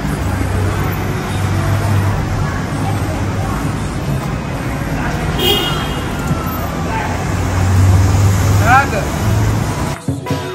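Street ambience: a steady rumble of road traffic with a low engine hum, and voices in the background.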